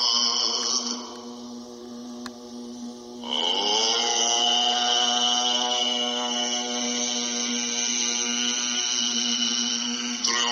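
Background music: a chanted drone held on one steady pitch, like a mantra. It drops away about a second in and swells back at about three seconds with a shifting vowel sound.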